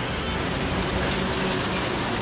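Semi truck passing close by in a film scene: a steady low engine sound with road and wind noise.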